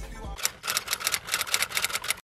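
Typewriter keystroke sound effect: a fast run of sharp key clicks starting about half a second in, after hip-hop music with a deep bass stops.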